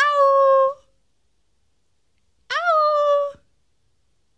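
Alaskan malamute giving two short howls about two and a half seconds apart, each rising quickly at the start and then held on one pitch.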